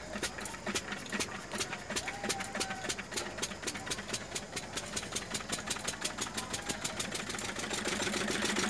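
Field Marshal 10HP single-cylinder diesel engine, hand-started and running with an even, rapid beat that grows slowly louder. Its fuel-injection timing has just been reset after an idler gear replacement, and it starts readily.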